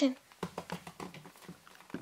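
Light, irregular tapping and clicking of a plastic doll being moved by hand across a dollhouse floor, about five or six taps a second.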